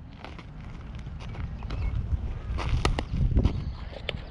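Low rumble of wind on the microphone, with a few short sharp clicks and knocks, the clearest about three seconds in.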